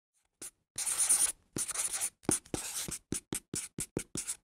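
Pen drawing on paper: scratchy strokes, first a couple of long ones, then quicker short strokes about three a second.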